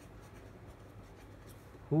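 Felt-tip marker writing on paper, a faint steady stroking sound as words are written out by hand.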